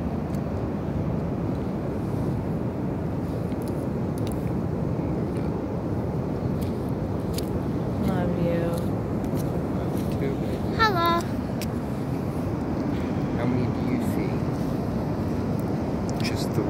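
Pacific Ocean surf breaking, a steady even roar, with two short voice sounds about eight and eleven seconds in.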